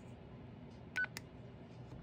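Baofeng UV-5R handheld radio's keypad beep: one short, high beep about a second in as a key is pressed, followed by a light click.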